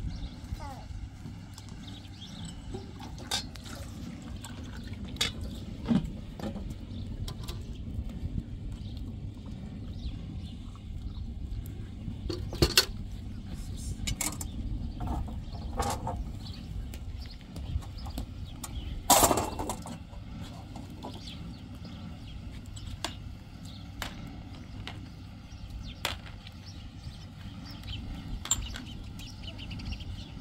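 Scattered clinks and knocks of metal bowls, kettles and utensils over a steady low background rumble, with one loud knock about two-thirds of the way through.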